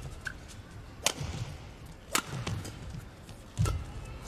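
Badminton rally: three sharp racket strikes on the shuttlecock, about a second or a second and a half apart, with low thuds of the players' footwork on the court around them.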